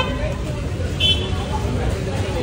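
Steady street traffic rumble with some background voices, and a short high-pitched tone about a second in.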